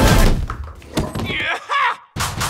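A heavy thud as a body is thrown against a wall, dying away over about half a second. Near the end comes a short shouted voice.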